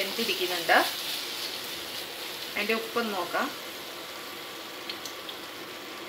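Chopped tomato and onion frying in a non-stick pan, a steady sizzle, the tomato cooked down to a thick paste.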